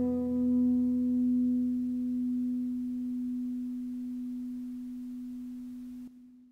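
The final note of a classical guitar piece ringing out and slowly dying away. Its higher overtones fade first until almost a pure tone is left.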